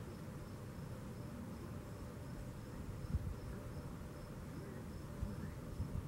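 A cricket chirping in an even series of short, high chirps over a low, steady outdoor rumble. There is a brief knock about halfway through and fainter ones near the end.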